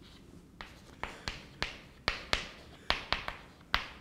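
Chalk writing on a blackboard: about a dozen sharp, irregular taps and short scratches as words are chalked in quick strokes.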